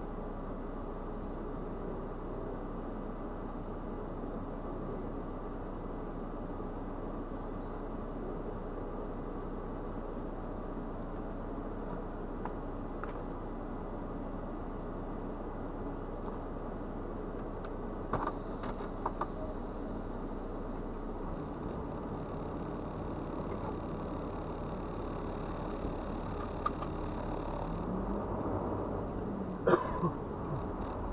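Semi-truck diesel engine idling steadily, heard from inside the cab, with a few light clicks about two-thirds of the way through. Near the end the engine note rises as the truck starts to pull forward.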